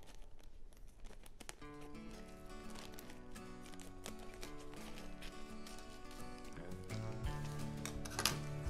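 Soft background music with held notes, coming in about two seconds in. Under it, faint snips and crinkles of scissors cutting the top off a plastic bag.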